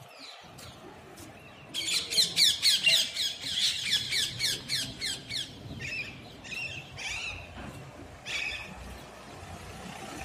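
Birds calling: a fast run of high-pitched calls, about eight a second, starting about two seconds in, then scattered single calls until near the end.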